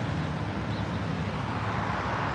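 Steady low outdoor rumble, with a faint short high chirp about three-quarters of a second in.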